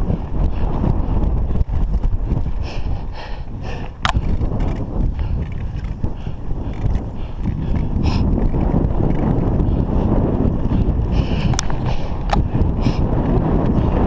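A 29er mountain bike riding on a dirt and gravel road: a steady rumble of tyre noise and wind on the microphone, with a few sharp clicks and rattles from the bike.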